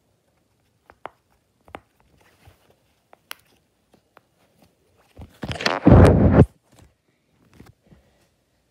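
Silicone pop-it fidget toy being pressed, a handful of separate soft pops. About five and a half seconds in, a loud rumbling handling noise lasting about a second as the phone's microphone is moved.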